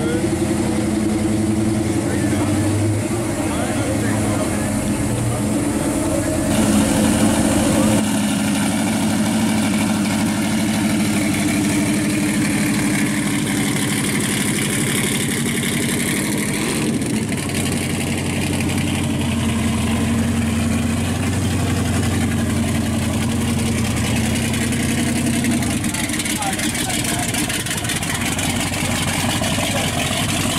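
Classic muscle car and hot rod engines idling with a steady exhaust note. The engine sound changes abruptly about eight seconds in and again near seventeen seconds, as a different engine takes over. Voices of a crowd run underneath.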